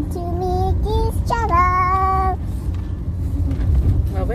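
A young girl singing a few high, drawn-out notes in a sing-song voice, the longest held for about a second, over the steady low rumble of a car cabin.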